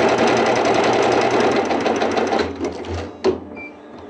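Multi-head industrial embroidery machine stitching logos at speed: a loud, rapid, even needle chatter that dies away about two and a half seconds in, followed by a single click.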